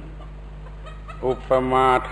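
A Thai monk's voice giving a dharma talk, resuming after a pause of about a second with the word อุปมา. A steady low hum of an old recording runs underneath.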